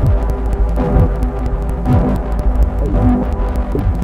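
Live electronic music from modular synthesizers: a loud, deep, steady drone with sustained higher tones above it. Low sweeps fall in pitch every second or two.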